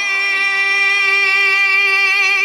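A male Quran reciter's voice holding one long, high note at a steady pitch in melodic recitation (tilawat).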